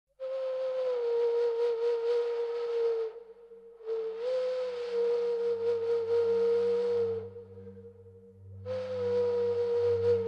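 A breathy, flute-like wind instrument playing three long held notes, each sliding slightly down in pitch, with short pauses between them. A low sustained drone comes in under it about four seconds in.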